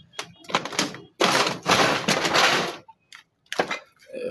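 Fire debris crunching and scraping in two noisy stretches, the second longer, followed by a few sharp clicks near the end.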